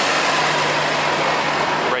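A bus driving past close by: a steady rush of engine and road noise with a low steady hum.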